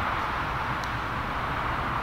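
Steady, even outdoor background noise with no distinct events.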